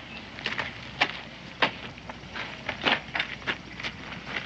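Footsteps of people walking on a dirt yard: a run of irregular crunching steps.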